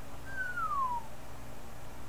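A single falling whistle from a person, one clear note sliding down in pitch for just under a second, over a steady low electrical hum.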